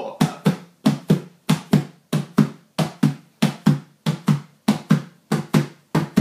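Hands slapping an upturned plastic container as a makeshift drum. A steady run of short hollow strikes, about three to four a second, in a long-short 'one-a-two-a-three-a-four' pattern.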